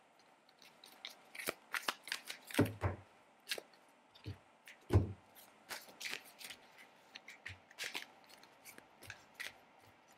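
A deck of tarot cards being handled and shuffled: irregular quick flicks and snaps of the cards, with a few duller knocks about two and a half and five seconds in.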